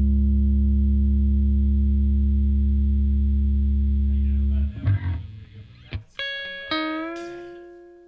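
End of a rock song: a loud held low chord from the band cuts off about four and a half seconds in. It is followed by a few single plucked guitar notes that each bend slightly in pitch and fade away.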